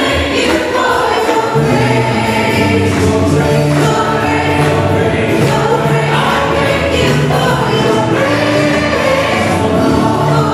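Live church worship music: lead singers and a choir singing a gospel song together, with a band of piano, drums and guitars accompanying.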